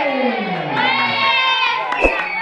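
A group of children shouting and cheering together, with one long, high-pitched shout held for about a second in the middle.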